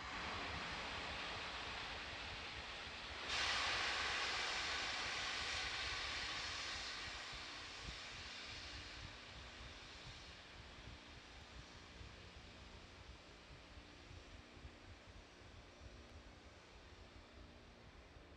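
Hiss of gas venting from a Falcon 9 rocket on the launch pad. It jumps louder about three seconds in, then fades gradually to a faint background over the following several seconds.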